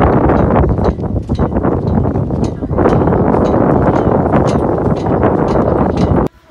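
Strong wind buffeting the microphone on an exposed snowy mountain top: a loud, rough rumble that swells and dips in gusts, growing louder about three seconds in.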